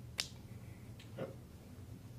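A single sharp click, the loudest sound, a fraction of a second in, followed by a fainter tick about a second later, over a steady low room hum.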